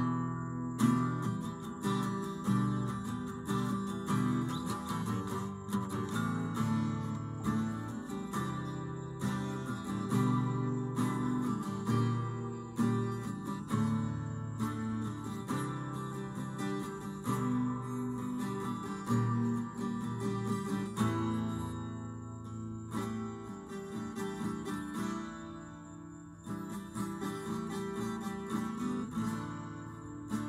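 Acoustic guitar played solo, chords strummed and picked in a loose, irregular rhythm, with a softer passage about two-thirds of the way through.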